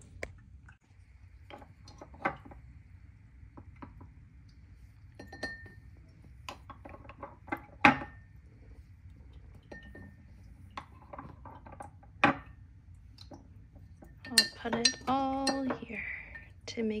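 A metal spoon clinking against glass jars as strawberry jam is spooned into a tall glass jar: scattered sharp clinks and taps, the loudest about 8 seconds in.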